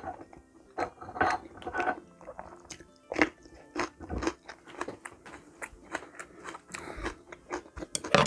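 Raw green chili pepper being bitten and chewed, a string of irregular crisp crunches.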